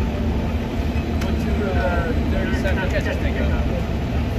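Steady low rumble of idling vehicle engines in street traffic, with a constant hum over it. Voices talk faintly in the background around the middle.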